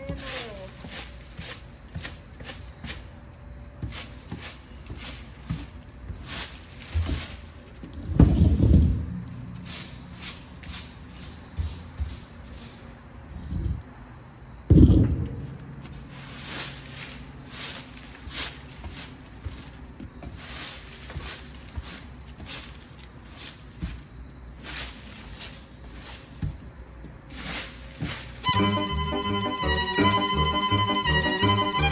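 A broom sweeping dry leaves across a wooden deck: repeated short scraping, rustling strokes, with two heavier low thumps, one a little over a quarter of the way in and one about halfway. Violin music comes in near the end.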